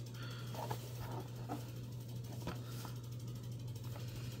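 Faint, scattered clicks and taps from a Funko Pop cardboard box with a clear plastic window being handled and turned in the hands, over a steady low hum.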